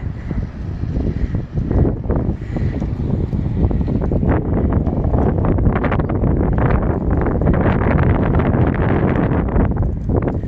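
Wind buffeting a phone's microphone outdoors, a loud low rumble that grows stronger about halfway through.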